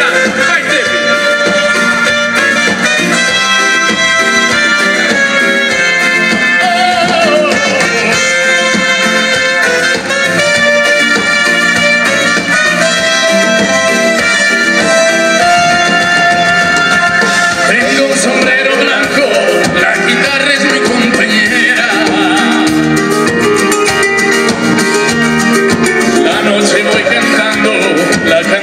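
Live Italian dance-band music: electric guitars, saxophone, keyboards and accordion playing a steady dance number, with some singing.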